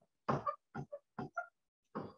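A person's voice in a few short, mumbled, grunt-like sounds, each cut off into silence.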